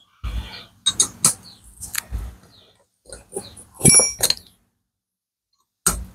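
Metal hand tools, a T-handle socket wrench and a steel rod, knocking and clinking against an aluminium motorcycle cylinder head in a string of irregular taps. The loudest is a ringing metallic clink about four seconds in, followed by a quiet stretch and one last sharp knock near the end.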